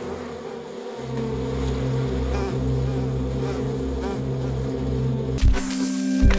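Swarm of honeybees buzzing steadily around a person covered in them. Near the end there is a sudden sharp hit as the sound cuts away.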